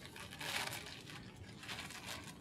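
Sterile paper drape from a tracheostomy care kit being unfolded and shaken open, the paper rustling, loudest about half a second in.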